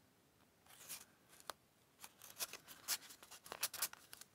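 Card-stock paper pieces being handled and slid into a paper pocket: a faint rustle about a second in, then a run of short, crisp paper clicks and scrapes of card against card.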